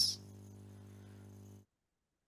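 Faint steady electrical hum in the call audio, which cuts off abruptly to dead silence about one and a half seconds in.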